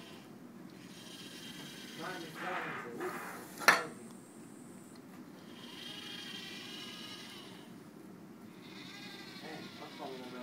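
SCORBOT-ER4u robot arm's electric joint motors whining in several spells as the arm moves, over a faint steady hum. A single sharp click just before four seconds in, the loudest sound, as the gripper takes hold of a tin can.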